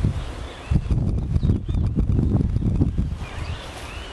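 Footsteps on grass and wind buffeting the microphone: irregular low thumps and rumble. Small birds chirp faintly in the background, more of them near the end.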